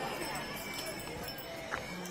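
Faint, indistinct voices over a steady noisy background.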